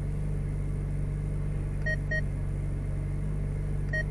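Ferrari 458 Speciale's V8 idling steadily, heard from inside the cabin as a low, even hum. Two short electronic beeps sound about halfway through, and one more near the end.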